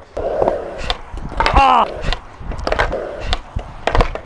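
Skateboard on concrete: a short stretch of wheels rolling and several sharp knocks of the board, with a brief loud cry from the skater about a second and a half in.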